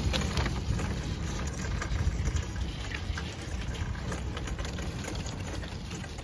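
Paper shopping bags rustling and crackling close to the microphone, over a steady low rumble.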